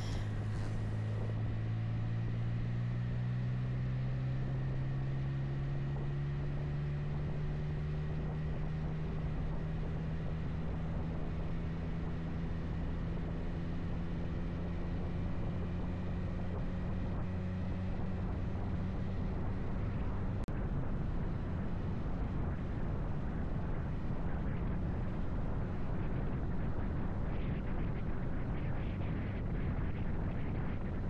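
Motorcycle engine running on the road with wind rushing past, its pitch climbing slowly as the bike picks up speed. About two-thirds of the way through there is a brief break, and after it wind and road noise are stronger and the engine tone is fainter.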